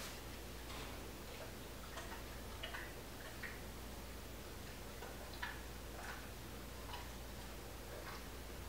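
Faint, soft ticks about every two-thirds of a second, pausing for a while in the middle, over a quiet steady room hum.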